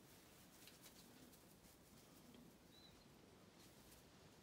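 Near silence: faint room tone with a few soft ticks and one brief, faint high chirp about three seconds in.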